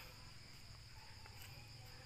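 Near silence with a faint, steady, high-pitched insect drone in the background.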